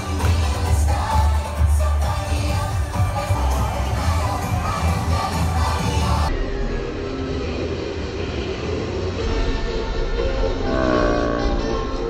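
Loud upbeat parade music with a heavy bass beat, played over the float's speakers, with crowd noise underneath. The sound changes abruptly about six seconds in, and a voice sings over the music near the end.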